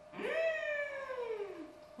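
A single long wail of dismay that rises briefly and then slides steadily down in pitch for about a second and a half, fading out near the end: a reaction to a botched glue-up, the mortises having been cut too shallow.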